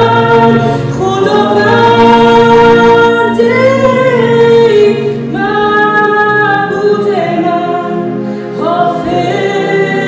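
A woman sings a slow worship song over sustained stage-piano chords. Her notes are long and held, with glides between them.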